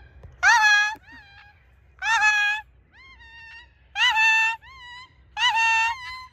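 A free-flying parrot calling overhead: four loud calls, each rising at its start and spaced about one and a half to two seconds apart, each followed by a fainter, shorter call.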